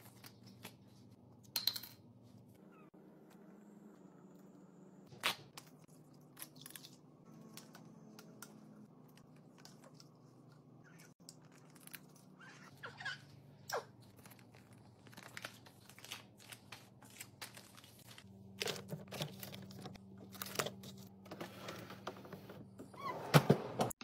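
Plastic breast-milk storage bags being handled: scattered crinkles, tearing and clicks, with a busier run of crinkling near the end, over a low steady hum.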